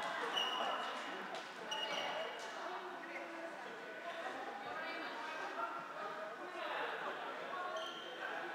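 Indistinct voices echoing around a large sports hall, with a few short high squeaks of shoes on the court floor.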